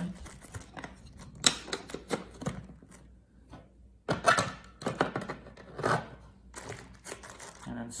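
3D-printed plastic cover pieces knocking and clicking against the plastic base housing of a robot arm as they are picked up and slid back into place. The knocks come irregularly, pause briefly about three seconds in, then return louder from about four seconds in.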